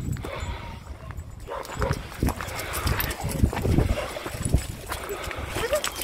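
Footsteps on a loose stony path, an irregular run of scuffs and knocks as several people and a dog walk over the stones.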